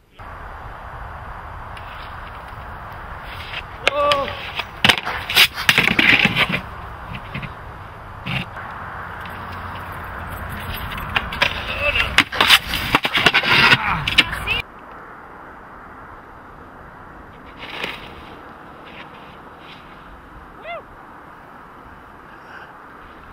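Outdoor snowboarding sound: a steady rush of wind and snow noise with sharp knocks and clatter, heaviest around five to six and twelve to fourteen seconds in, where a snowboard hits and slides on a stair handrail. A few short shouts sound too. About fifteen seconds in the noise drops abruptly to a quieter hiss.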